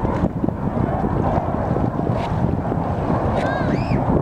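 Wind buffeting the microphone in a loud, uneven low rumble, mixed with the jet noise of a Boeing 737-800 on final approach. A brief high-pitched call arches up and down near the end.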